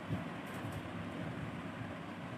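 Steady low room noise: an even hiss with a faint low hum, with no other sound standing out.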